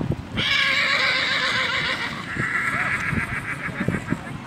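A horse whinnying, one long high call of about three seconds that steps down in pitch partway and ends in a trembling quaver, over the hoofbeats of a pony cantering on grass.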